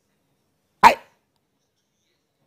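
A man says a single short word, "I", about a second in, in a pause of his talk; otherwise near silence.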